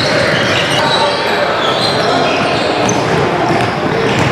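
Busy gym noise: many basketballs bouncing on a hardwood court, with the chatter of players' voices and a few short high squeaks from sneakers.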